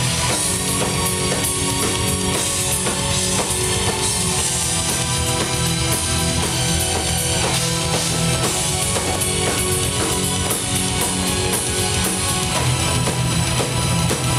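Progressive metal band playing live and loud: drum kit with steady bass drum under electric guitars and sustained pitched parts.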